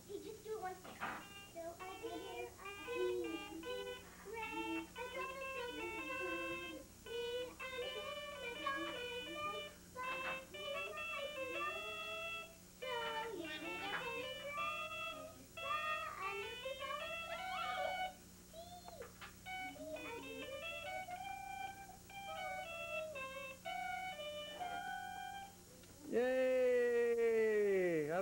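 A handheld electronic toy playing a beeping electronic tune of short stepped notes, with a child's singing voice winding along beneath it. Near the end comes a loud falling swoop, the loudest sound in the stretch.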